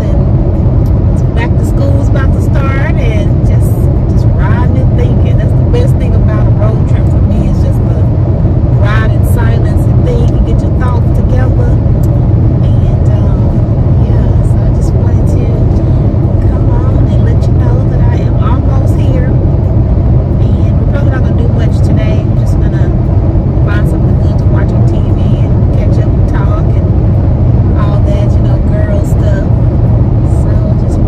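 Steady road and engine noise inside a car cruising at highway speed, a constant low rumble, with a woman talking over it.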